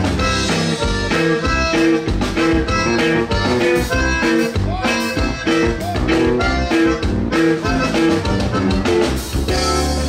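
Live conjunto music: a button accordion and a bajo sexto play an instrumental passage over a drum kit keeping a steady beat.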